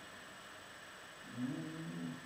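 A man's low hummed or chanted tone that begins a little over a second in and steps slightly up in pitch, held for under a second, as part of a seated breathing and sound exercise.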